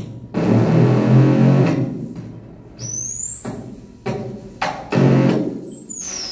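Electronic buzzing from an interactive sound installation of metal poles that sound when touched with bare skin: loud low buzzing that switches on and off abruptly as hands grip and let go of the poles, with a high whistling tone sliding up about halfway through and drifting down toward the end.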